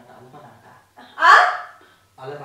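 Soft, low speech, then about a second in a short, loud vocal exclamation that rises in pitch.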